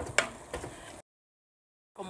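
A wooden spoon knocks once against a clay cooking pot as raw beef pieces are stirred, over a faint hiss. From about a second in the sound cuts to dead silence.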